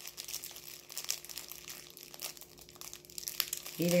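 Plastic wrapping crinkling in faint, irregular crackles as a bundle of makeup brushes is handled.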